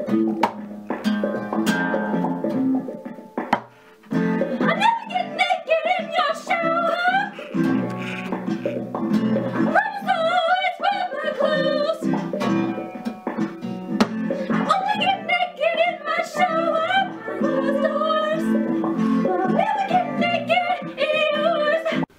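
Acoustic guitar strummed, with a voice singing a wavering melody over it from about four seconds in. The guitar drops out briefly just before the singing starts.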